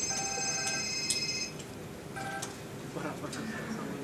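Windows alert chime from the presenter's laptop, sounding as Visual Studio's 'text was not found' message box pops up after a failed search, lasting about a second and a half in a room with a little echo. A second, shorter tone follows about two seconds in.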